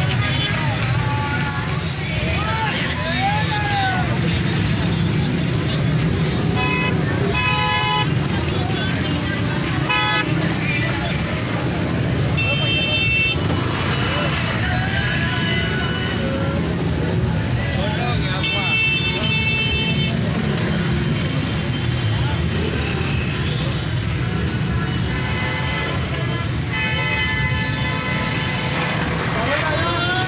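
Congested street traffic: car and motorcycle engines running at a crawl, with horns honking repeatedly, some blasts held for a second or more, over shouting crowd voices.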